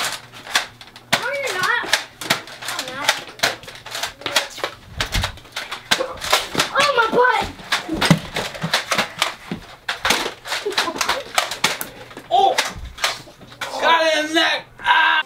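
Toy Nerf blasters firing, a run of sharp clicks and pops spread through the whole stretch, mixed with wordless voices shouting and laughing.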